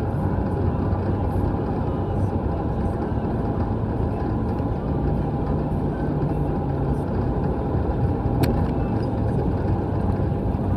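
Steady engine and road noise inside a moving car's cabin, with a single sharp click about eight and a half seconds in.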